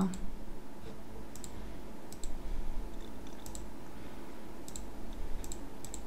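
Computer mouse button clicking: about six short, sharp clicks at irregular intervals, several heard as a quick double press-and-release, over a faint low hum.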